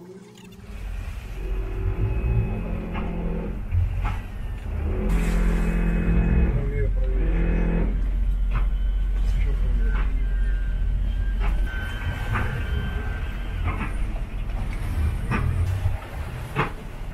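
Twin outboard engines running at low speed with a deep, steady rumble as the boat is maneuvered by joystick, their propeller wash churning the water. Several sharp clicks and knocks come through on top.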